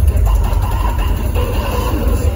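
Hardcore dance track played loud over a club sound system and picked up by a phone: a heavy, continuous low bass rumble with synth sounds over it.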